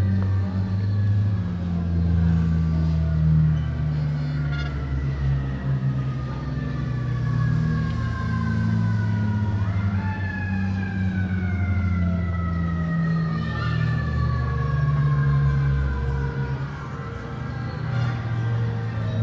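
Sound-art piece: a steady low drone with several parallel higher tones that slowly fall in pitch, jump back up about ten seconds in, and fall slowly again.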